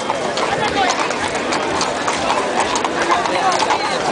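Hooves of a pair of carriage horses clip-clopping on asphalt as they pull a carriage past at a walk, over steady crowd chatter.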